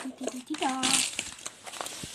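Foil snack bag crinkling and rustling as bacon-flavoured chips are shaken out of it into a plastic bowl of corn puffs. A short voice sound is heard about half a second in.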